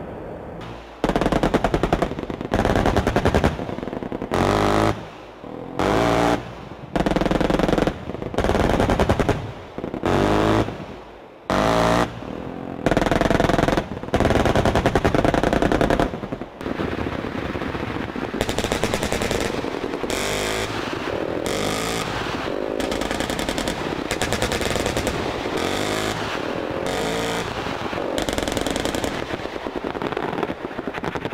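Automatic weapon fire: about a dozen short bursts of rapid shots, each roughly a second long, then continuous rapid fire from about halfway on.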